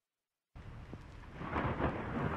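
Rumbling thunder with a wash of rain, starting suddenly about half a second in after silence and growing steadily louder.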